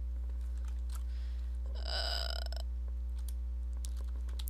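Steady low hum with a few faint mouse clicks. About two seconds in, a short throaty vocal sound from a person, just under a second long.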